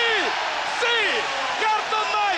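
Basketball arena crowd cheering a made three-pointer, with excited shouting voices over the steady roar.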